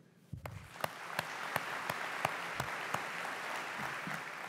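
An audience applauding, starting a moment in and quickly building to steady clapping that begins to thin out near the end.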